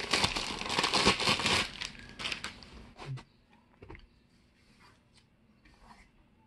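Thin clear plastic bag crinkling as it is pulled off a small amplifier, dense for about two seconds and thinning out by about three seconds in, followed by a few faint handling knocks.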